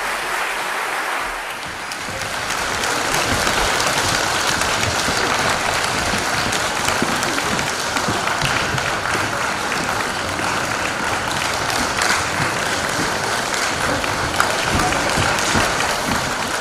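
Audience applauding in a concert hall, a dense, even clapping that grows a little louder in the first few seconds and then holds steady.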